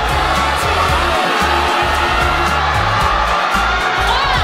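Loud pop music over an arena PA, with a heavy bass line, under a steady wash of crowd noise.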